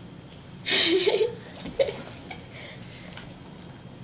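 A person's voice in a short burst about a second in, with a brief second vocal sound just before two seconds; otherwise quiet room tone.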